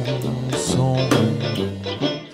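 Small swing brass band playing between sung lines: sousaphone bass notes and banjo strumming over a drum kit.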